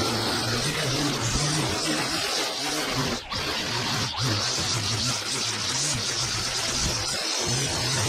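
Upbeat background music with a repeating bass line, briefly dipping about three seconds in.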